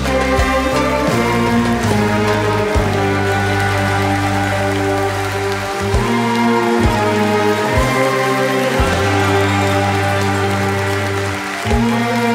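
Orchestra with a large string section playing sustained chords over long-held bass notes in an Arabic song arrangement. From about halfway on, short low beats mark the pulse roughly once a second.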